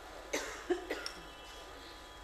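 A person coughing: three short coughs in quick succession within the first second.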